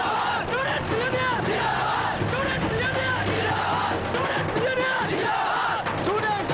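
A crowd of young men shouting and cheering together, many voices overlapping in a steady din.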